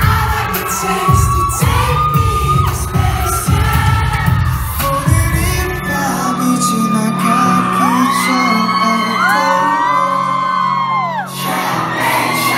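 Live band and male singer playing in a large hall, heard from the audience: vocals over a driving drum and bass beat, then the drums drop out about halfway and a low note is held. Several high voices overlap near the end, whoops from the crowd over the band.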